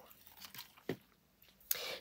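Faint rustling and crackling as a jar lid decorated with dry moss and copper-wire fairy lights is handled and set down, with a small click about a second in and a short hiss near the end.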